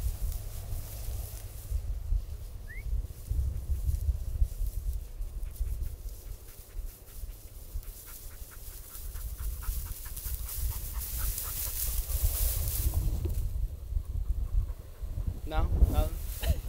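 Wind buffeting the microphone with an uneven low rumble, over the swish of tall dry prairie grass as someone walks through it. A short run of faint quick ticks comes about two-thirds of the way through.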